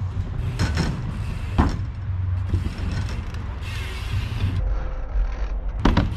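Bicycle being ridden across a concrete skatepark: tyres rolling and the bike rattling, with a few sharp knocks, two in the first couple of seconds and one near the end. Steady wind rumble on the microphone underneath.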